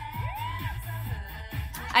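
Pop dance track from the battle footage playing, with a steady bass line and a synth tone that glides up and falls back in the first second.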